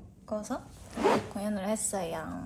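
A woman speaking Korean, with a brief rasp of a jacket zipper about a second in.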